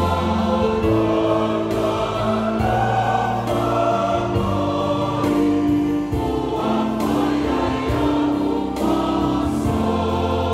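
Church congregation of men's and women's voices singing a Samoan hymn together in harmony, with long held notes that move from chord to chord.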